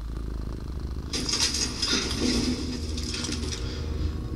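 Domestic cat purring close to the microphone, a steady low rumble. A scratchy rustle, like fur rubbing over the microphone, joins it about a second in and fades out near the end.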